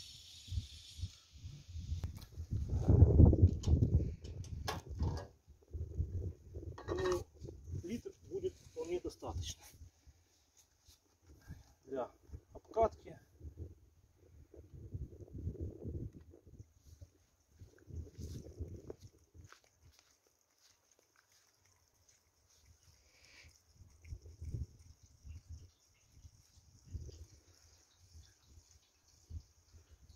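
Petrol poured from a plastic canister into a generator's fuel tank, glugging in uneven bursts, with clicks and knocks from handling the canister.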